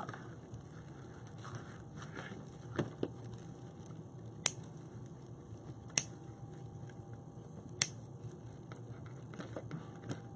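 Soft rustling and crinkling of deco mesh being pulled open by hand, with three sharp clicks about a second and a half apart in the middle.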